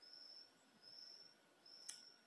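Near silence: a faint, high chirp repeating about once a second, with a soft click near the end.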